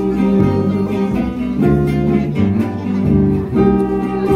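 Live acoustic string swing band playing an instrumental passage: acoustic guitars strumming the rhythm over a plucked double bass line, with a bowed fiddle.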